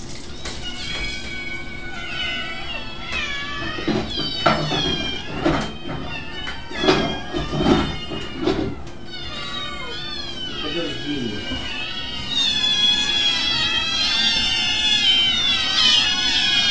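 Cats meowing repeatedly in many short high-pitched calls. The calls crowd together and overlap near the end.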